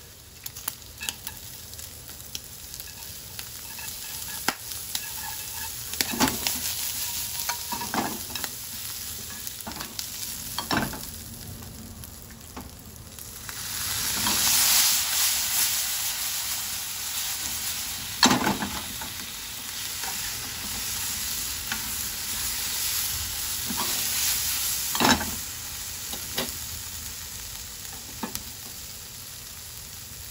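Bacon and onion wedges sizzling in a frying pan while being stir-fried, with scraping and a few sharp knocks against the pan. The sizzle swells louder about halfway through, while the pan is being shaken.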